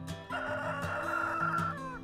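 A rooster crowing once, a harsh call of about a second and a half that drops in pitch at the end, over acoustic guitar music.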